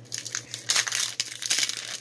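Foil wrapper of a Pokémon booster pack crinkling and crackling as hands tear and pull it open, a dense run of quick crackles.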